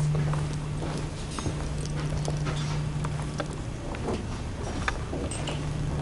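Footsteps on a hard floor, irregular taps, over a steady low hum.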